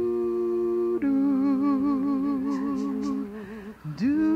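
Wordless vocal humming. One steady held note gives way about a second in to a slightly lower note with a wavering vibrato, which fades out near the end.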